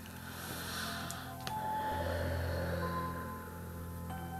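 Soft meditative background music of sustained low tones, a deeper tone swelling in about halfway through. A deep breath is heard in the first second or so.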